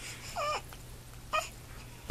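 A newborn baby's two short, high cries: the first, about half a second long, wavers in pitch; the second, about a second later, is briefer.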